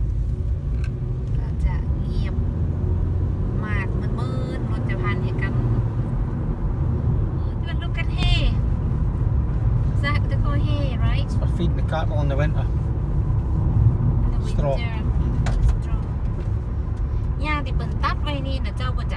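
Steady low road and engine rumble heard from inside the cabin of a car driving along a country road.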